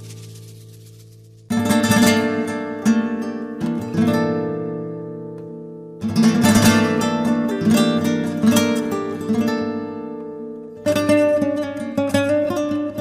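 Instrumental music on acoustic guitar: three loud strummed chords, the first about a second and a half in, one near the middle and one near the end. Each rings out and fades slowly, with plucked notes over it.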